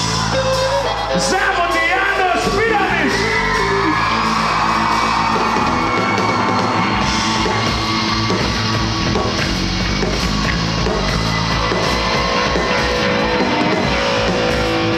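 Rock band playing live, with an electric guitar over sustained band sound. Whoops and yells ride over the music in the first few seconds, then a long held note.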